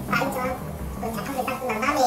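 Speech only: a man talking in Korean, from an interview recording.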